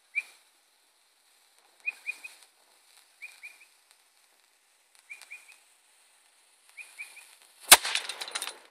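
Mini homemade black powder cannon firing once near the end with a single sharp bang, followed at once by a brief rattle of clinks. Before the shot, a bird calls in short, high, falling chirps, mostly in groups of two or three, every second or two.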